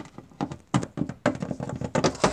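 A quick, irregular series of light taps and clicks: a small plastic Littlest Pet Shop toy figure being moved by hand and tapped along a hardwood floor.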